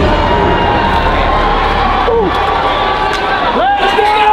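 A team of players cheering and shouting together in celebration, with one voice sliding down about halfway through and a whoop rising into a held shout near the end.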